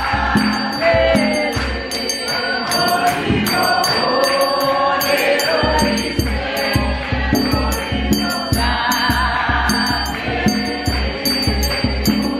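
Gospel choir singing over a steady drum beat with jingling percussion; the drum drops out briefly near the middle.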